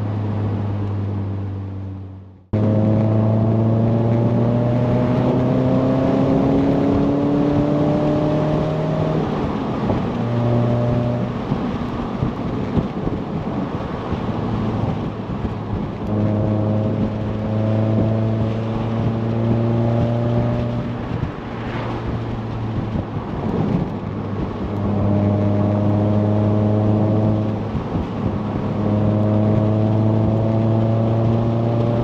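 Mazda MX-5 NC roadster with a BBR Super 185 upgrade, its four-cylinder engine heard from on board. About two seconds in the sound briefly cuts out; then the engine pulls hard, its pitch climbing for several seconds under acceleration. After that it drops back and holds steady, with short lifts off the throttle, over a steady rush of road noise.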